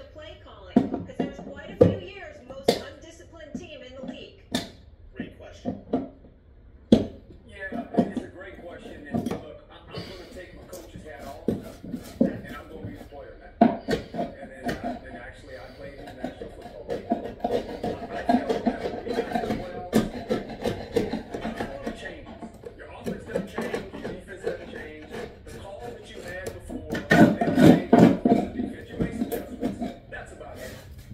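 Irregular sharp clicks and knocks of a hand tool prying staples out of stair treads. Under them, speech and music play from a device in the room.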